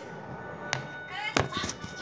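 Two sharp knocks about two-thirds of a second apart from a phone being handled while filming, with a brief voice sound just before the second.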